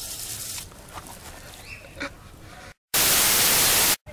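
A garden-hose spray nozzle jet hissing for about half a second at the start, then only faint handling sounds. Near the end, after a moment of dead silence, a loud, even burst of static lasts about a second and stops abruptly.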